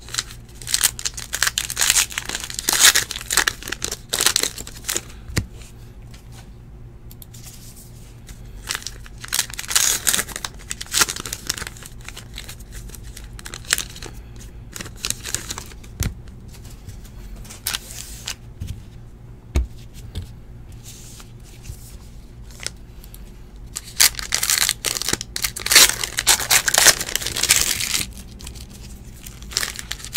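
Trading-card pack wrappers being torn open and crinkled by hand, in three noisy spells: near the start, about ten seconds in, and near the end. Between them are quieter stretches of cards being handled and stacked, with small clicks and rustles.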